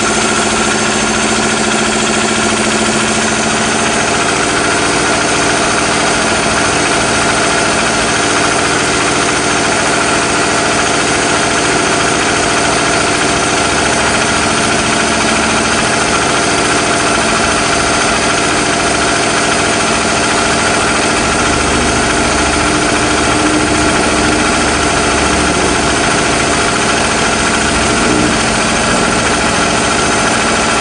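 Bench-run engine with a helical variable camshaft idling steadily at about 900 rpm.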